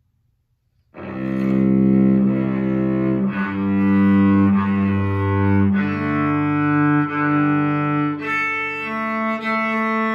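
Cello played with a homemade double-frogged bow. It begins about a second in with long held notes that change pitch every couple of seconds, then shorter rhythmic strokes near the end.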